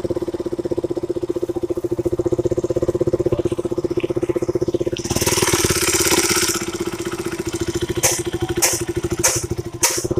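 KTM RC 200's single-cylinder engine idling steadily, running again after its dead fuel pump was replaced. About five seconds in a hiss rises over the engine for about a second and a half, and a few sharp ticks come near the end.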